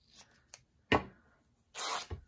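A couple of small scissor snips into the edge of a piece of muslin, then the muslin ripping apart in one short, loud tear near the end.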